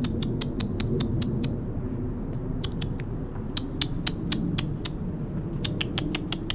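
Bursts of rapid, sharp clicking, about five clicks a second in several short runs, over a steady low rumble.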